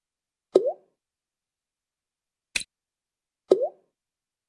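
Software sound effects of answer cards being dragged and dropped into place: a short pop with a quick upward pitch glide about half a second in, a sharp click at about two and a half seconds, then a second rising pop near the end.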